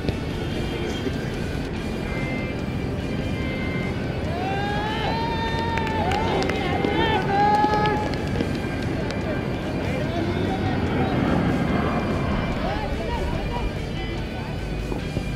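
Footballers' shouts and calls during open play on the pitch over a steady outdoor noise bed. The calls are loudest from about halfway through, with a few more near the end.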